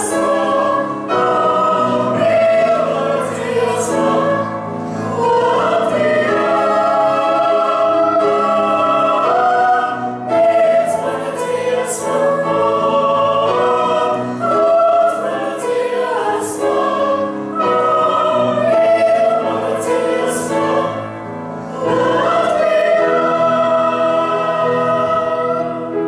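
Small mixed choir of men's, women's and children's voices singing together in sustained phrases, with brief breaks between phrases.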